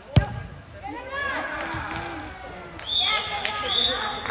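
One sharp thud of a soccer ball being struck just after the start, followed by high-pitched children's voices shouting across the hall.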